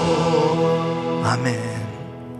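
A man singing the closing line of a worship song into a microphone over sustained instrumental chords. His voice holds a note and stops about a second and a half in, leaving the accompaniment chords to fade.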